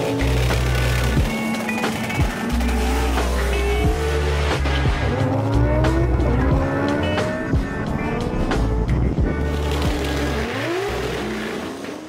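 Outro music with a heavy, sustained bass line and a steady beat, fading out at the very end.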